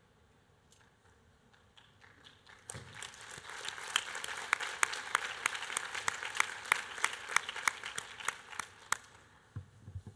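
Audience applauding: a few scattered claps at first, swelling into steady applause about three seconds in, then stopping about a second before the end.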